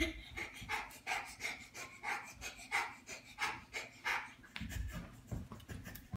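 Rapid, rhythmic panting, about three quick breaths a second, with a few low thuds near the end.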